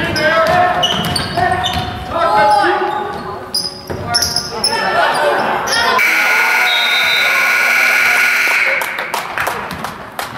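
Gym basketball game: voices shouting, short high sneaker squeaks and the ball bouncing on the hardwood. About six seconds in, the scoreboard buzzer sounds, one steady tone lasting about three seconds.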